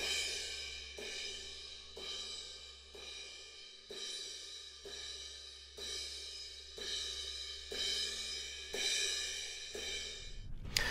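A cymbal struck about once a second, ringing on between strikes, as heard through a cardioid close mic on a snare drum. The mic is being turned so that its rear null points at the cymbal to reject the cymbal bleed. A faint steady low hum runs underneath.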